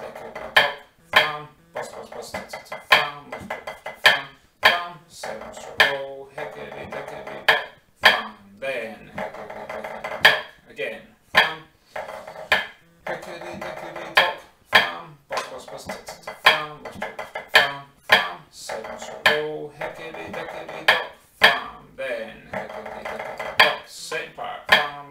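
Drumsticks on a snare-drum practice pad playing a pipe band 3/4 march: accented strokes at about two a second with rolls between them, over sustained pitched backing music.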